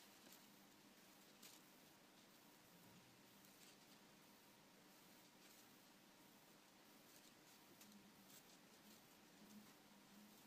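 Near silence: room tone with a faint steady hum and a few soft ticks of seed beads on thin wire being handled as another row is wrapped around a beaded petal.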